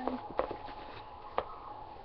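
Two or three light clicks, such as plastic knocks from handling a toy doll and its high-chair tray, one just after the start and one about a second and a half in, over a faint steady hum. A high voice trails off in the first moment.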